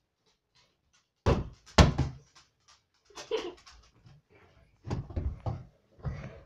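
A water bottle hitting a wooden table: two sharp thuds about half a second apart a little over a second in, then a few more knocks near the end.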